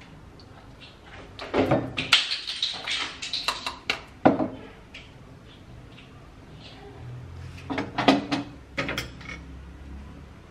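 Clinks and knocks of a stainless steel mesh sieve and a wooden mortar being handled while straining beetroot juice into a glass bowl, in two bursts: a run of knocks from about one and a half to four seconds in, and a shorter cluster near eight seconds.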